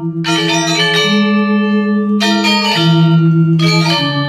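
Balinese gamelan angklung playing: low metal-keyed tones held under a steady pulsing beat, stepping to a higher note a second in and back down near three seconds, with bright metallic strikes near the start, about two seconds in and near the end.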